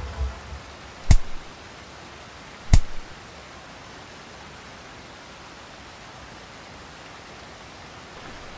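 Two sharp thuds about a second and a half apart, blows landing in a scuffle, followed by a steady hiss.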